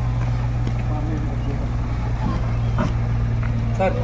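Small Tata CNG pickup truck's engine idling with a steady low drone, with faint voices over it.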